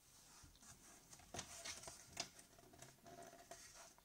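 Faint rustle and a few soft clicks of a hardcover picture book's laminated paper page being turned by hand.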